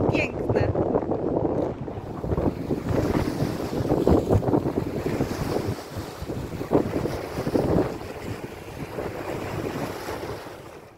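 Wind buffeting the microphone in uneven gusts, over waves washing onto a rocky shore.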